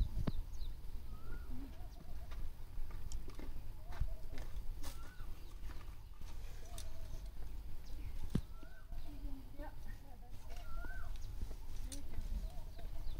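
Faint animal calls: a short rising-and-falling call every one to two seconds, over a steady low rumble, with a few sharp clicks.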